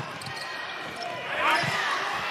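Live basketball court sound: arena crowd hubbub with a basketball bouncing on the hardwood floor, and voices rising faintly near the end.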